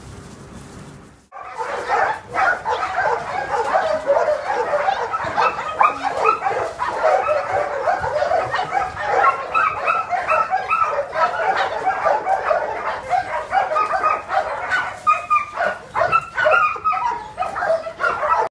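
Many dogs in a shelter's kennels barking and yipping at once, a dense, unbroken chorus of overlapping barks that starts abruptly about a second in.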